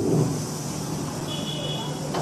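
Room noise during a pause in an amplified speech: a steady hiss with a low hum. A faint, high electronic beep sounds for about half a second past the middle.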